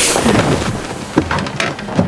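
A loud, sudden rush of noise that rumbles and dies away over about two seconds, like a thunderclap.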